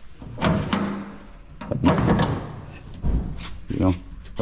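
Metal tailgate of a Sankey trailer, rigged to open as a door, being shut and tested against its latch. Sharp metal clunks with a short ring come about half a second in and again around two seconds, and a deep thump follows about three seconds in. The tailgate is held fast: good and solid.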